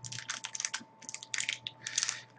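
Hockey card pack's foil wrapper crinkling in short, irregular crackles as it is gently peeled open by hand.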